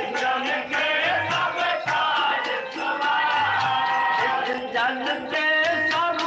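Devotional music: several men singing together to a harmonium's held chords and a steady tabla beat.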